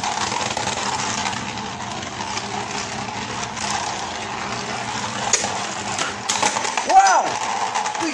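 Two Beyblade Burst tops, Winning Valkyrie and Hercules, spinning on a metal stadium floor: a steady scraping whir, with several sharp clicks as they strike each other late on. A brief shout comes near the end.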